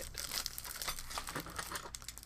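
A mail package being torn open by hand: irregular crinkling and tearing of the paper packaging.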